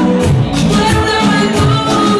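Upbeat Latin-style music with a steady beat.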